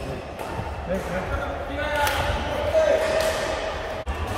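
Badminton racket striking the shuttlecock during a doubles rally, one sharp hit about halfway through with fainter hits around it, echoing in a large indoor sports hall.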